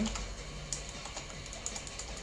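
Computer keyboard being typed on: a few separate, irregular key clicks over a low steady hum.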